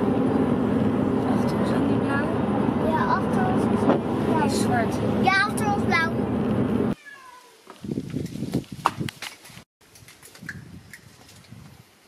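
Steady road and engine noise inside a moving car's cabin, with high-pitched child-like voice sounds over it. About seven seconds in it cuts off suddenly to a much quieter outdoor stretch with light rustling and handling noises.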